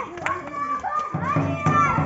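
Children shouting and calling out in high voices, with a lower voice joining in about halfway through.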